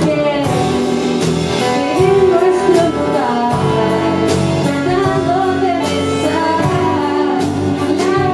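A woman singing a song live into a microphone, holding long notes, over instrumental accompaniment with a steady beat.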